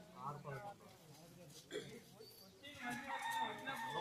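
A rooster crowing, one long held call that starts in the second half, over faint voices.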